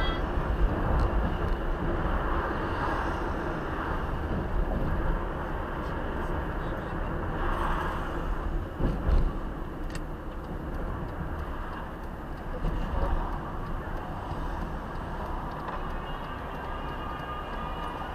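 Road noise inside a moving car's cabin: a steady low rumble of engine and tyres while driving through city traffic at about 55 to 68 km/h.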